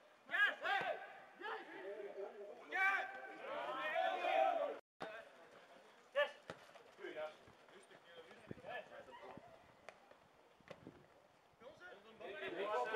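Players and touchline spectators shouting and calling during a football match, loudest in the first half; a brief gap of silence falls near the middle, after which fainter calls come with a few short, sharp knocks, typical of the ball being kicked.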